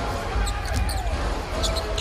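A basketball being dribbled on a hardwood arena court, a series of short sharp bounces over a low arena rumble.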